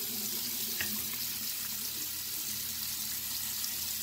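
Tap water running steadily into a bathroom sink, with the wet, lathered bristles of a makeup brush being scrubbed on a ridged silicone cleaning mat.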